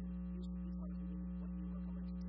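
Steady electrical mains hum on the audio feed, with faint pitched tones flickering on and off above it.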